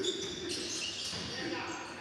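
A basketball bouncing on a wooden gym court during play, with faint voices in the hall.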